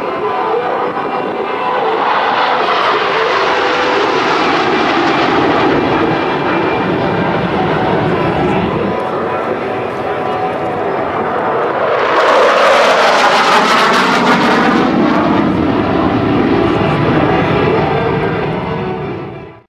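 Jet noise from USAF Thunderbirds F-16 Fighting Falcons flying over, a steady loud roar that swells twice, the second and louder pass about twelve seconds in, with the tone sweeping as each jet goes by.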